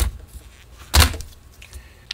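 Plastic front grille of a pedestal fan being handled and pulled off: a light click at the start, then a single loud knock about a second in.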